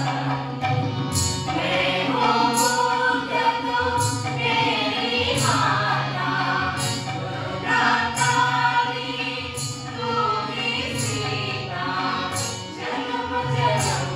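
A mixed group of men and women singing a folk song in chorus, accompanied by harmonium and tabla. A steady percussion beat of roughly one stroke every 0.8 seconds runs under the singing.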